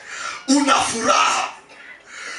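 Speech: a man's voice for about a second, starting about half a second in.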